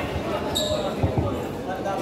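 People talking among a large group of players on a basketball court, with two short, dull thumps about a second in and a brief high squeak about half a second in.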